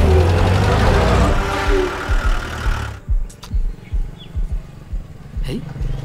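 Car engine of a black Hindustan Ambassador running loud, with a low rumble, for about three seconds before it cuts off abruptly. After that there are a few scattered knocks over quiet outdoor background.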